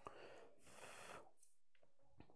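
Near silence, with a faint click at the start and a short, faint puff of breath about half a second to a second in.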